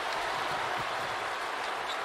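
Steady noise of a large basketball arena crowd, an even wash of many voices with no single sound standing out.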